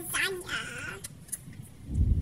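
A child's high-pitched giggling in the first second, fading to faint sounds.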